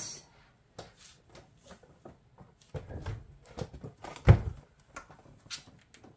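Plastic housing of a Litter-Robot 4 automatic litter box being handled and taken apart: scattered light clicks and knocks, with one louder thump about four seconds in.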